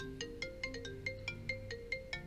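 A smartphone alarm ringtone going off, playing a quick repeating melody of short pitched notes, about five a second.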